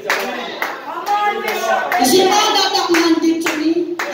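A congregation clapping hands while a woman's voice sings through a microphone, with some long held notes.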